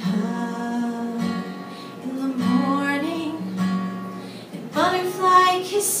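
Acoustic guitar strummed, its chords ringing on, with a woman singing over them.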